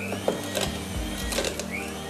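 Electric mixer motor running steadily as it works a thick mixture of minced game meat, eggs and butter into pâté, with background music.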